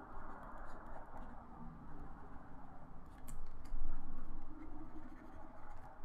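Stylus rubbing across a drawing tablet's surface in repeated painting strokes, the scratching swelling and fading with each stroke and loudest for about a second past the middle, with a couple of light clicks just before it.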